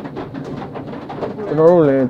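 Speech: a voice starts talking about one and a half seconds in, with quieter, broken sound before it.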